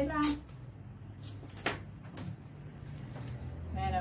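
A strip of adhesive tape pulled off the roll and torn off: a few short rasping bursts, the loudest about a second and a half in.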